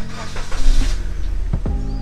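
Suzuki Ertiga's four-cylinder petrol engine started with the key: a short burst of cranking and catching about half a second in, then settling into a smooth idle. The engine sounds smooth and healthy.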